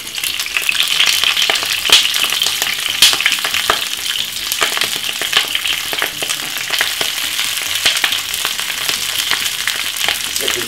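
Chunky-cut cabbage sizzling in hot olive oil in a frying pan, a steady hiss full of sharp crackles and pops, the loudest about two and three seconds in.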